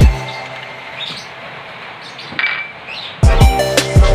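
Butter and oil sizzling in a hot nonstick frying pan, a steady even crackle for about three seconds. Background music with a heavy beat cuts back in about three seconds in.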